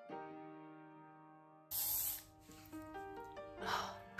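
Piano background music; nearly two seconds in, a short hiss of aerosol hairspray lasting about half a second.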